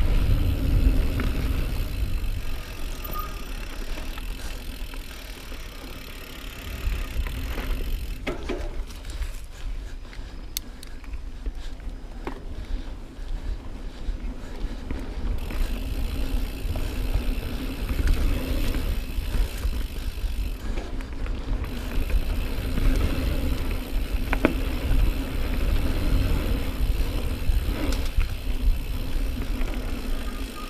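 2018 Norco Range full-suspension mountain bike descending a dirt singletrack: a steady rush of riding noise with wind rumbling on the microphone and the bike rattling. A few sharp knocks come as it hits bumps, and the noise eases off briefly several seconds in.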